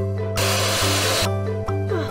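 Light plucked-string background music, with a loud hiss-like burst of noise starting about a third of a second in and lasting about a second.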